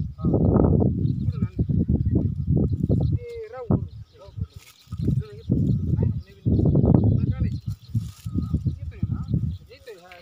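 People talking in conversation.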